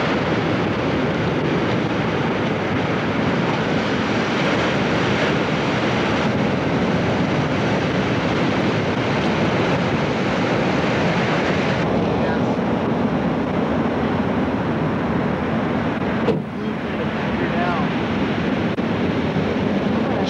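Steady rushing roar of breaking surf mixed with wind on the microphone, with a brief drop about sixteen seconds in.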